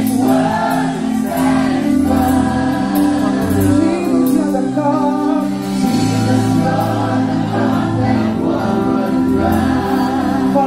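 Live gospel worship music: a band playing while several voices sing together in long held notes, with drums keeping a steady beat.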